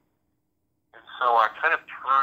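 Speech only: a short pause, then a voice talking from about a second in.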